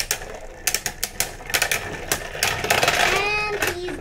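Two Beyblade spinning tops clashing in a plastic stadium: rapid, irregular clicking and rattling as they knock against each other while spinning. A child's drawn-out voice sounds briefly about three seconds in.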